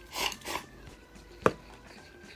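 Chopsticks scraping against a rice bowl as rice is shoveled into the mouth, two quick strokes in the first half second. About a second and a half in comes a single sharp knock, the loudest sound, as the bowl is set down on the table.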